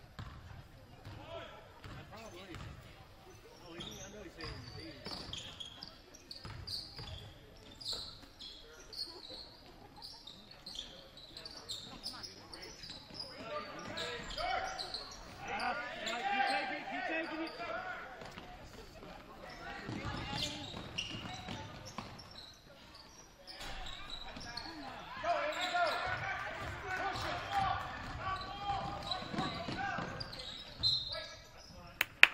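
A basketball bouncing on the hardwood gym floor during live play, with voices of players and spectators calling out, growing louder about halfway through and again near the end.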